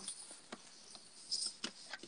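Faint rustling and light taps of a printed paper sheet being handled, with a brighter rustle and a small click about one and a half seconds in.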